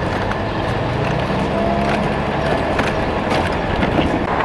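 Child's pedal go-kart rolling along a concrete sidewalk: a steady rumble from its hard plastic wheels on the pavement, with a few faint clicks.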